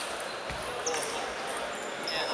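Table tennis in a sports hall: a sharp click of the ball at the start, a dull thud about half a second in and a short high squeak, over the general noise and chatter of the hall.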